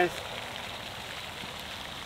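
Steady splashing hiss of pond aerating fountains spraying water.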